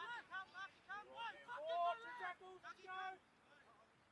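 Faint, unintelligible shouting voices of players and onlookers across a rugby field, dying away about three seconds in.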